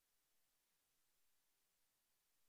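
Near silence: only faint recording hiss.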